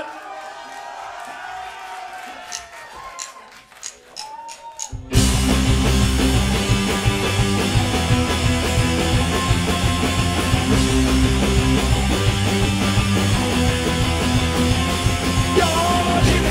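A live punk rock band with electric guitars, bass and drums bursts in all at once about five seconds in and plays a loud instrumental intro. Before that come a few seconds of quieter crowd voices and a quick run of sharp clicks.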